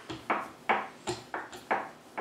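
A spice shaker of ground cinnamon being shaken over dough in quick strokes, making a run of short sharp taps, about three a second.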